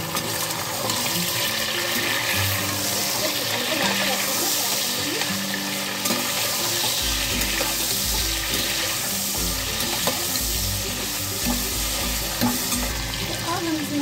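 Chicken pieces and sliced onions frying in hot oil in a pressure cooker, sizzling steadily while a slotted metal spoon stirs them around the pot.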